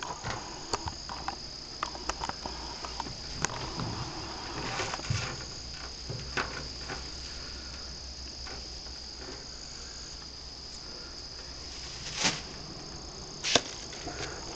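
Steady high-pitched chirring of crickets, with scattered faint clicks and two sharper knocks near the end.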